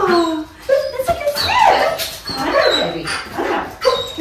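A young liver shepherd whining and yipping in a string of high calls that rise and fall in pitch, the excited noises of a highly energetic, playful dog.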